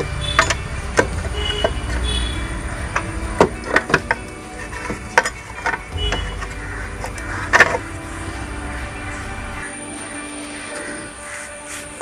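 Scattered light metallic clicks and knocks from metal parts and a bolt being handled and fitted on a scooter's belt-drive side, over faint background music.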